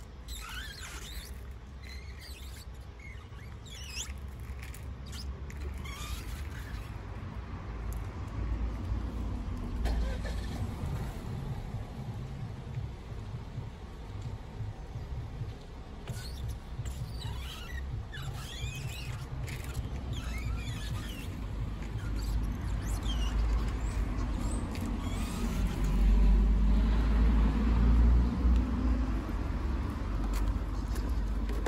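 Window squeegee's rubber blade squeaking in short strokes across wet glass, over a low steady rumble that grows louder near the end.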